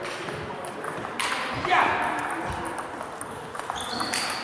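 Table tennis ball being struck by bats and bouncing on the table during a rally, a series of short, sharp clicks, with voices in the hall.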